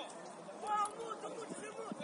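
Distant voices of football players and onlookers shouting and calling across an open pitch.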